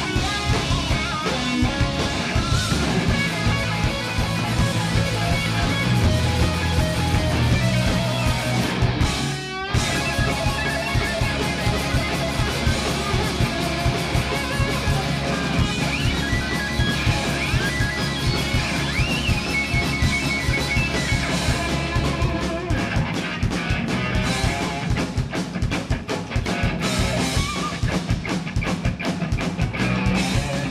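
Live rock band playing electric guitar and drums, with a short break in the music about nine and a half seconds in.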